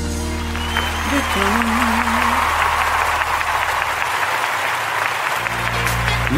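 Applause over a gospel song. The clapping swells in about half a second in and dies away near the end, while the song's bass and melody carry on underneath.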